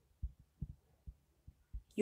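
Faint, soft low thumps, about six of them at irregular intervals, from a stylus writing on a drawing tablet.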